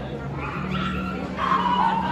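A dog barks twice, a short bark under a second in and a louder, longer one about a second and a half in, over crowd chatter and a steady low hum.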